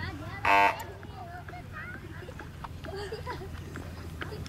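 A short electronic buzzer sounds once, about half a second in, for roughly a quarter of a second: the start signal for the rider's round in show jumping. Faint spectator voices carry on underneath.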